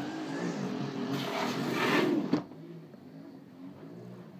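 A window being slid shut: a rushing, scraping slide lasting about two seconds, ending in a soft knock as it closes. After that the background noise from outside drops away suddenly.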